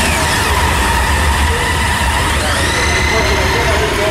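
Police motorcycle engines running as the bikes pull slowly out of the lot, over a steady low rumble, with a rising pitch about two and a half seconds in.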